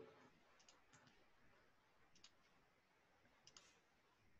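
Near silence with a few faint, short clicks spread across a few seconds: a computer mouse being clicked while a screen share is started.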